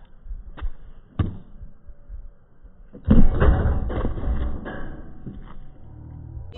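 A basketball striking the hoop and bouncing on a hard outdoor court during a missed dunk attempt: a couple of sharp knocks in the first second or so. About three seconds in comes a louder stretch of rushing noise lasting around two seconds.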